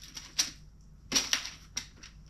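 Clear plastic compartment tackle box of hooks and clips being handled and snapped open: a series of sharp plastic clicks with small rattles, one group near the start and a quicker cluster a little past halfway.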